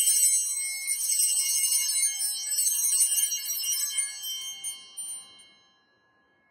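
Altar bells shaken in a continuous bright jingling peal at the elevation of the consecrated host, the signal of the consecration; the ringing fades and dies out near the end.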